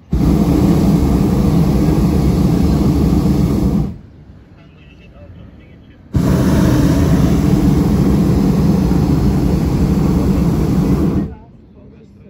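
Hot-air balloon propane burner firing in two long blasts, about four and five seconds each, each a loud steady rush that starts and cuts off abruptly, with a quiet gap of about two seconds between them.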